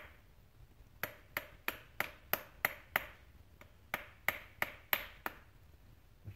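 A screwdriver tapping around the rubber cup seal of a drum-brake wheel cylinder, working the seal and its metal ring evenly into the bore so it does not go in one-sided. The taps are sharp, slightly ringing clicks, about three a second, starting about a second in and stopping shortly after five seconds.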